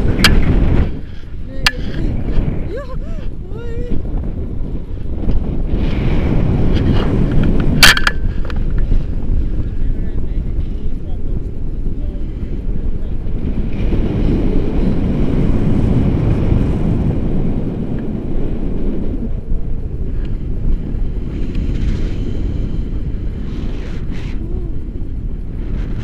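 Wind buffeting the camera's microphone in flight under a tandem paraglider, a loud rumble that surges and eases. A few sharp knocks sound near the start and again about eight seconds in.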